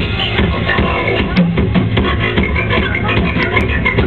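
Rock band playing live: drums and electric guitar, loud and continuous.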